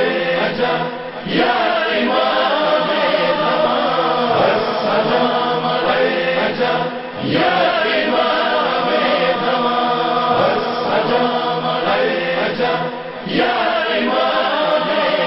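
A voice chanting in long, slowly bending melodic lines. It pauses briefly for breath about every six seconds.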